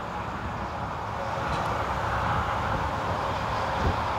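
Steady outdoor background noise of road traffic: a low rumble with a hiss that swells a little in the middle, and a soft low bump near the end.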